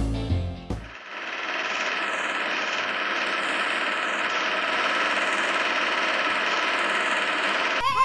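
Music cuts off about a second in, giving way to a steady, rapid film-projector clatter and crackle sound effect. New music starts abruptly near the end.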